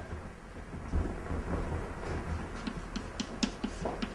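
Low rumble of room and microphone noise, with a few faint light clicks in the second half.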